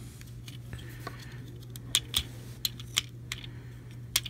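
Plastic parts of a transformable robot action figure clicking and snapping as its leg panels and joints are moved and locked into place: a scattering of short, sharp clicks.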